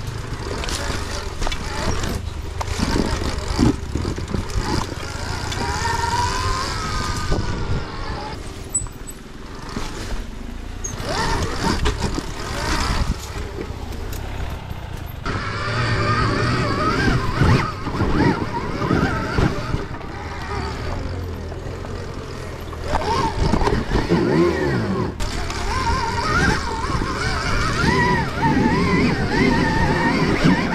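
Off-road motorcycle being ridden over a rough trail, its pitch rising and falling over and over with the throttle, with knocks from the bumpy ground.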